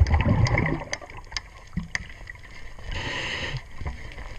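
A scuba diver breathing through a regulator, heard underwater: a loud rush of exhaled bubbles in the first second, then a hissing inhalation about three seconds in, over scattered faint clicks.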